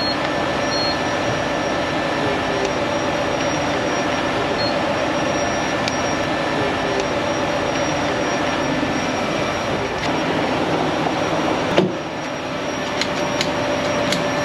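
Steady drone of a running engine with a constant hum, and a sharp click about twelve seconds in.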